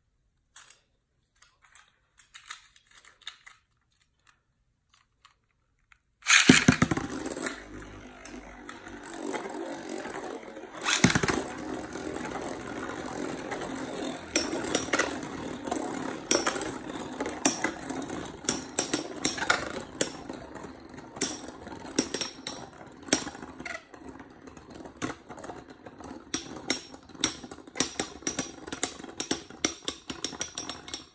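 Two Takara Tomy Metal Fight Beyblades are launched into a clear plastic stadium with a sudden loud clatter about six seconds in. They then spin with a steady whirr, broken by rapid clacks as they strike each other and the stadium walls. A second loud hit comes about five seconds after the launch.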